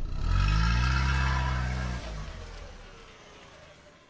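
A vehicle engine revs up as the vehicle pulls away, rising in pitch over the first second and holding for about another second. The sound then drops and fades steadily into the distance.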